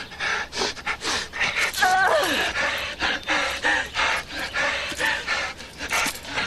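Heavy, rapid panting and gasping of people struggling at close quarters, with a short strained cry falling in pitch about two seconds in.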